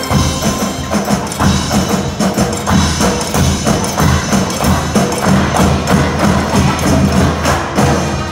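Live school brass band music played on stage: a rhythmic passage full of quick, sharp percussion strikes over a pulsing low brass bass line.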